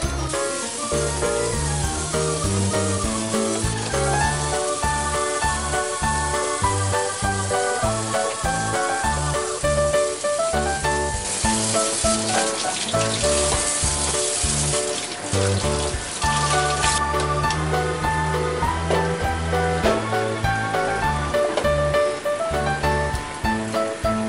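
Background music throughout, over the rasping scrape of a fish scaler across a sea bass's scales, then, from about 11 seconds in, a tap running as the scaled fish is rinsed; the water stops a few seconds later.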